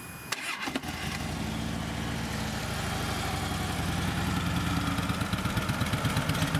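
2009 Harley-Davidson Ultra Classic's fuel-injected Twin Cam 96 V-twin is cranked over by its starter and catches about a second in. It then idles with an even, pulsing beat that grows slightly louder.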